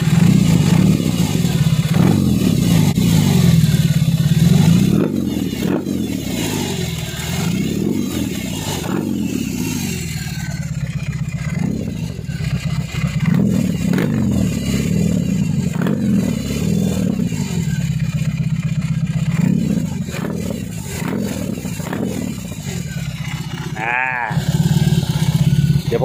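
BMW R18's 1,802 cc boxer twin running through custom slip-on mufflers, revved repeatedly by hand on the throttle. The revs rise and fall back to idle several times, with the strongest blips in the first few seconds.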